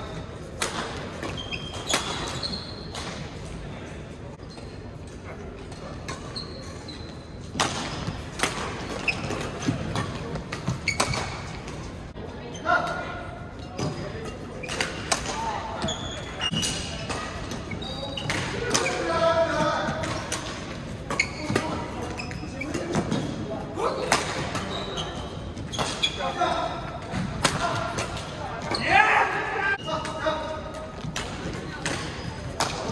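Badminton doubles play in a reverberant gym hall: repeated sharp cracks of rackets striking the shuttlecock, short squeaks of shoes on the court floor, and players' voices, which come mostly in the second half.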